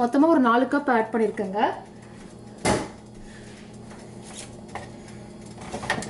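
A woman speaking briefly, then a single clunk of cookware in a kitchen about two and a half seconds in, followed by a low steady hum with a few faint clicks.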